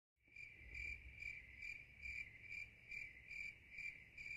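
Cricket chirping: a faint, high, even chirp repeating a little over twice a second.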